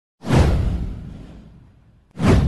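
A whoosh sound effect with a deep low end, starting suddenly about a quarter second in and fading away over about a second and a half.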